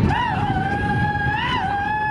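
A single voice holding one long, high note into a microphone, the pitch wavering slightly, over a steady low rumble of outdoor noise.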